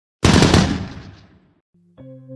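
A sudden loud burst of rattling noise that fades away over about a second and a half.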